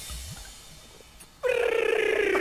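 Soundtrack of a Coca-Cola TV commercial playing back: a quiet stretch, then about a second and a half in a loud, long vocal note starts abruptly and slowly falls in pitch, with music.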